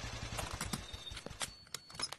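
A motorcycle engine idling with a rapid, even thump, dying away about half a second in. It is followed by a few scattered light clicks and knocks as the bike is stopped and the riders get off.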